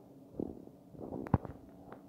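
Dry-erase marker writing on a whiteboard: a few short strokes and taps, the sharpest about a second and a half in.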